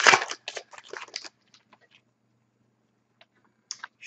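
Trading-card pack wrapper crinkling and tearing as it is opened by hand, a quick run of crackles over about the first second, with a few faint ticks near the end.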